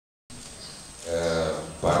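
A man's voice: a drawn-out hesitation sound held for about half a second, then the start of spoken Portuguese, over a low steady hum.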